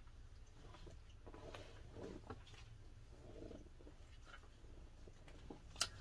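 Faint rustling and handling noises as a labelled skein of yarn is picked up off the floor, over a low steady room hum, with one short click near the end.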